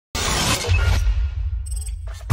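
Cinematic logo-intro sound effect: a sudden crashing hit right at the start with a deep bass boom, fading over the next second, then a brief high glittery shimmer near the end.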